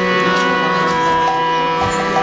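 Harmonium playing sustained, held chords as the kirtan gets under way, with a few short notes added near the end.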